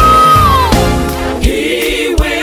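Gospel quartet song with voices in harmony over a band: a lead voice holds a high note that falls away just under a second in, and a drum hit comes near the end.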